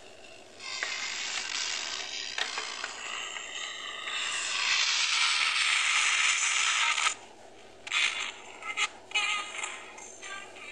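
Homemade 10-transistor FM radio, run off a single 1.5 V AA cell, playing through a loudspeaker as its tuning knob is turned. Rushing static between stations swells loud through the middle, cuts out about seven seconds in, then breaks into short choppy snatches of broadcast sound near the end.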